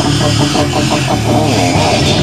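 Hardcore band playing loud, dense heavy music: electric guitar with bass and drums in a rehearsal recording.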